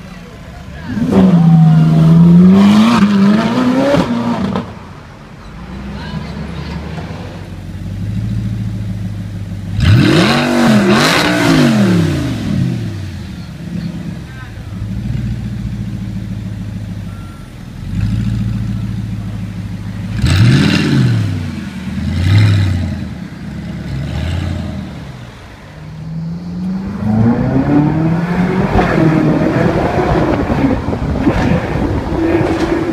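Supercar engines idling and revving. There are sharp throttle blips, with the revs climbing and falling, at about two, ten and twenty-one seconds, and a steady low idle in between. Near the end a long climbing rev follows as a car accelerates.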